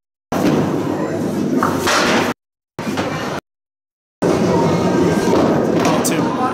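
Candlepin bowling alley noise: a thrown candlepin ball rolling down the lane and striking the pins about two seconds in, among loud hall noise. The sound cuts out abruptly to dead silence several times.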